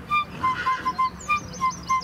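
A small fife playing a quick tune of short, detached high notes, about four a second.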